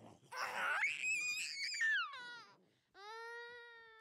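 A young child's voice: a loud, very high-pitched shriek starting just after the start, falling in pitch around two seconds in. About three seconds in comes a long, steady held 'aah', like a cry.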